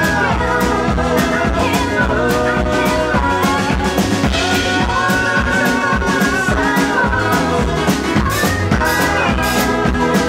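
A woman singing live into a handheld microphone over a pop band with a steady drum beat.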